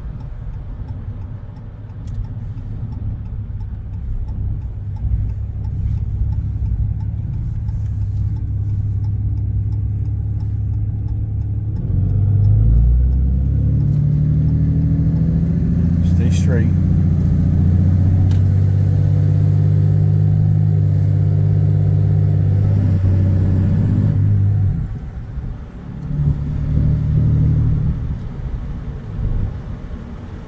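A Ram pickup's Cummins diesel with a straight-pipe exhaust, heard from inside the cab. It drones low while cruising, then about twelve seconds in it pulls harder, its note rising and holding loud for about twelve seconds before it eases off.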